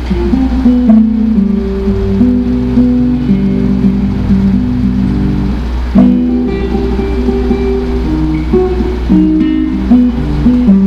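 Nylon-string classical guitar played fingerstyle, plucked melody notes and chords left to ring, with a firmer chord struck about a second in and again about six seconds in. A steady low hum lies underneath.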